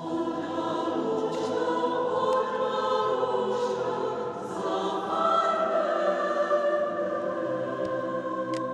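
Mixed choir singing held chords in a church.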